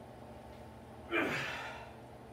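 A man's sharp, forceful gasp-like breath about a second in, starting suddenly and trailing off with a falling pitch over most of a second: his exhale of effort while bending a steel bolt by hand.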